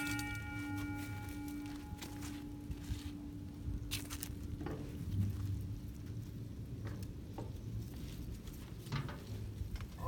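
A stainless steel mixing bowl ringing after being knocked: one steady tone fading away over about seven seconds, its higher overtones dying out within the first two seconds. A few light knocks of handling follow.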